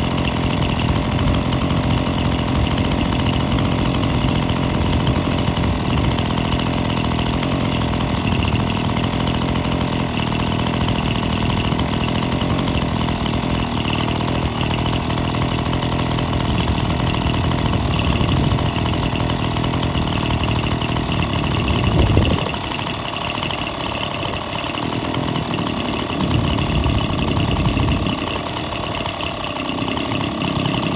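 Suffolk Pony two-stroke stationary engine running on its own, brought back to life with a points and carburettor clean after years unused. It runs steadily, gives a brief louder burst about 22 seconds in, and after that runs unevenly.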